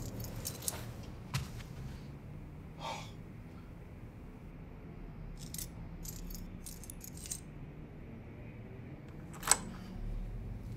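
A bunch of keys jingling in hand, with scattered small metallic clicks and jangles that cluster about halfway through. One sharp, louder click comes near the end.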